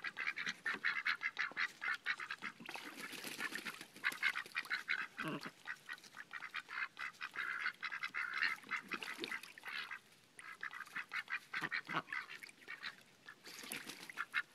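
A small flock of domestic ducks (Pekin, Welsh Harlequin, Cayuga) chattering with soft, rapid quacks, in runs with short pauses. There is a quieter lull about ten seconds in.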